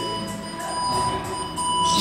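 A steady electronic beep: one long high tone held for about two seconds, sounding in the pause between the call to get ready and the start of the next exercise round.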